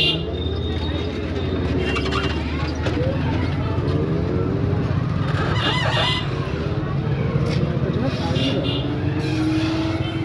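Busy street traffic and market bustle: motor vehicle engines running with a steady low hum and voices of passers-by, a short horn toot right at the start, and an engine note rising slowly near the end.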